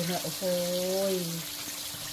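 Battered chicken pieces deep-frying in oil in a wok, a steady high sizzle, with a person's voice speaking over it, drawn out and loudest from about half a second in.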